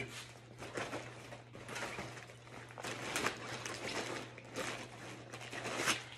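Rustling, crinkling and small irregular knocks as a fabric backpack is rummaged through and items are pulled out of it, over a steady low hum.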